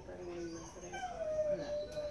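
Dog whining while a urinary catheter is passed into its penis: a short lower whine, then a long, slightly falling whine from about a second in.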